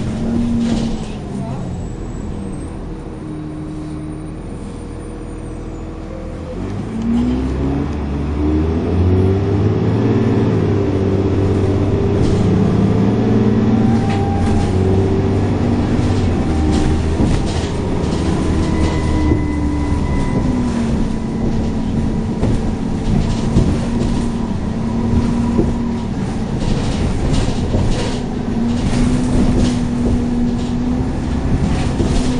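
Dennis Trident 2 double-decker bus engine heard from inside the lower saloon, running fairly quietly at first, then revving up hard about a quarter of the way in as the bus accelerates. It holds high revs for several seconds, then its pitch drops about two-thirds of the way through and it runs on steadily.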